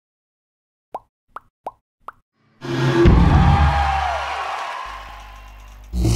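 Sound effects for an animated graphic: four quick plops, about half a second apart, starting about a second in, then a loud whooshing swell with a deep low rumble. The swell fades away over about two seconds, and a new hit comes right at the end.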